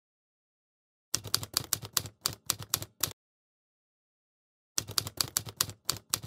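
Typewriter keystroke sound effect, a quick run of sharp clacks about seven or eight a second, marking on-screen text being typed out letter by letter. It comes in two runs, one about a second in and another starting near the end.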